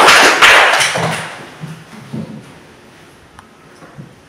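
A classroom of children clapping together, fading out a little over a second in, followed by quiet room noise with a few faint knocks.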